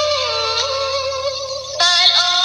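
Khmer song: a singing voice with musical backing holds a long note that slides down early on, then a louder new phrase begins near the end.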